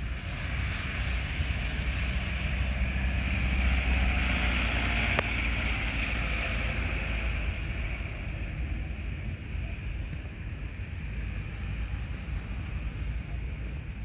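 Outdoor engine rumble from a passing vehicle or aircraft, swelling to a peak about four seconds in and then easing, over wind on the microphone. A brief click about five seconds in.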